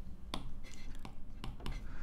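A handful of light, sharp clicks and taps, about six in two seconds, over a faint low hum.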